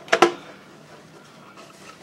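Two quick sharp clicks near the start from the carrying case of a 1948 Motorola portable television as its lid is opened, followed by quiet room tone.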